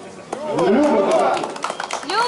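Several men's voices talking over one another, followed near the end by a few sharp knocks.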